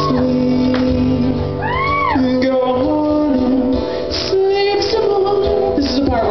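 A man singing into a microphone over a strummed acoustic guitar, played live through a PA. About two seconds in, his voice slides up and back down on a held note.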